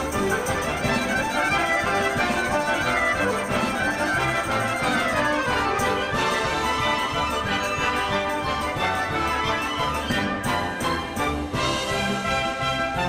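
Orchestral folk-dance music with a steady, driving beat and runs of falling notes in the middle, and a couple of sharp accents near the end.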